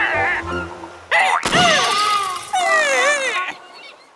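Squeaky, wordless cartoon character vocal noises that slide and waver in pitch, over light background music, with a sharp thunk about a second and a half in. The sound fades away near the end.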